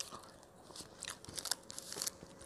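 Faint, scattered crunching and crackling of thick grilled toast with a chocolate and green tea filling, as it is pulled apart and eaten.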